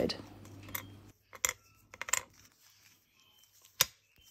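Baked polymer clay pieces clicking as they are set down on a hard work surface: a few light, sharp taps at uneven intervals, the loudest near the end.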